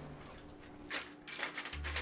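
Hands rummaging in a kitchen cutlery drawer, metal utensils rattling and clattering in a few quick bursts in the second half.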